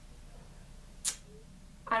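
Quiet room tone during a pause in talk, with one short, sharp hiss about a second in: a quick intake of breath. A woman's voice starts a word at the very end.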